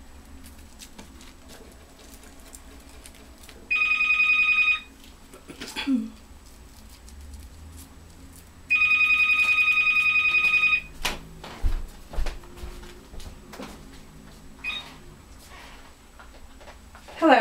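A telephone ringing with an electronic trill, twice: a short ring about four seconds in and a longer one of about two seconds near the middle. A few knocks and low thuds follow the second ring.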